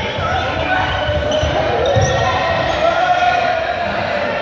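A group of young people shouting and calling out together in a large echoing sports hall, over many running footsteps thudding on the court floor.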